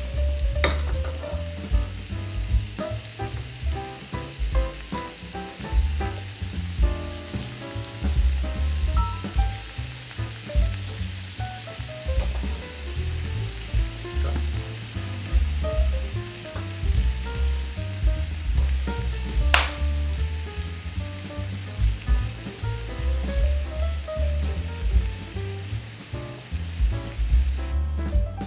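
Thin-sliced beef and onions sizzling in teriyaki sauce in a nonstick frying pan, with one sharp click about two-thirds of the way through. Background music with a pulsing bass line plays underneath.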